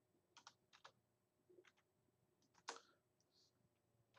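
Faint computer-keyboard typing: a few separate keystrokes at an uneven pace, the loudest about two-thirds of the way through.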